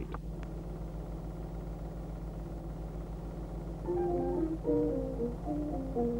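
Background music: a melody of short, stepped notes on a mallet or plucked instrument comes in about four seconds in, over a steady low hum.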